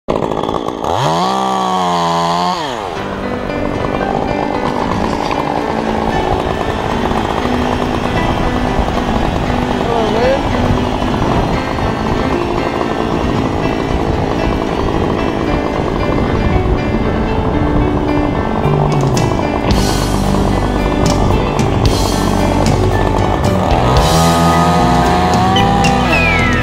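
Stihl chainsaw running, revved up hard about a second in and again near the end as it cuts into a sycamore trunk, throwing chips.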